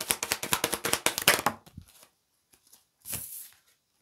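A tarot card deck being shuffled by hand, a rapid run of papery clicks for about a second and a half. A short swish of a card follows about three seconds in.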